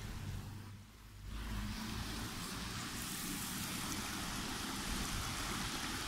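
Water running over rocks in a small stream cascade, a steady rush that dips briefly about a second in and then holds even.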